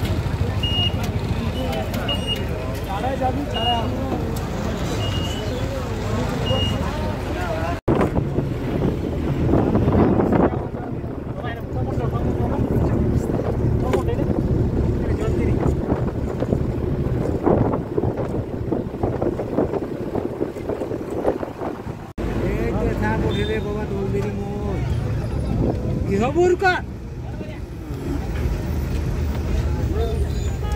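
Bus engine and road noise, with passengers' voices over it, as the bus moves. A string of short high beeps repeats during the first few seconds.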